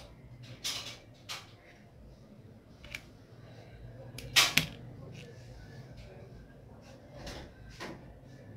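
Tabletop handling noises from needle, thread and small metal thread snips: a few scattered short knocks and rustles, the loudest a quick double knock about halfway through.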